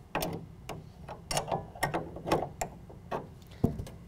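A hand wrench working the bolt of a tonneau cover rail clamp, making a string of irregular metallic clicks and scrapes as the clamp is snugged up against the truck bed rail.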